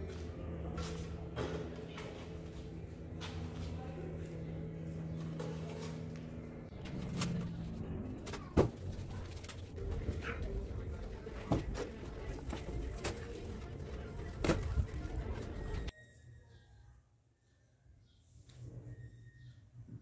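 Low, steady bird calls with about five sharp knocks spaced a second or two apart, then a sudden drop to a much quieter background about four-fifths of the way through.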